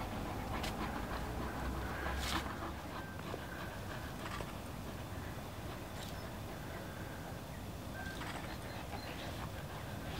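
Two large dogs tugging and chewing on a stick together: scattered small cracks and clicks of wood and teeth, with a sharper crack about two seconds in.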